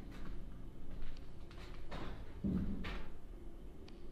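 Footsteps on a gritty floor in an empty hallway, and a dull thump of unknown origin about two and a half seconds in.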